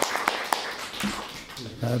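A few people clapping by hand, the applause thinning to a handful of separate claps in the first second and then dying away.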